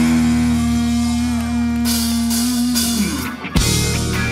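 Live funk-rock band playing, with electric guitar over bass and drums on a held chord. About three seconds in the chord cuts off, there is a brief gap, and the band comes back in on a sharp hit.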